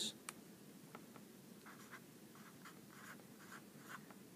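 Felt-tip marker on paper: a small click near the start as the cap comes off, then a series of faint short writing strokes.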